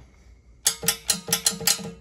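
SMC solenoid valves on an air tank clicking as they are switched, a quick run of about ten sharp clicks starting about half a second in, with a steady hum beneath them. The valves are operating with their ground taken through the valve body and the tank.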